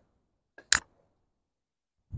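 A single short, sharp tap about three-quarters of a second in, as a split piece of firewood is stood upright on a wooden chopping stump and the knife blade is laid across its top before batoning.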